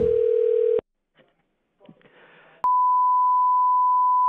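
Telephone ringback tone heard over the phone line, cutting off under a second in as the call is answered. After a moment of faint line noise, a steady high single-pitched beep starts about two and a half seconds in.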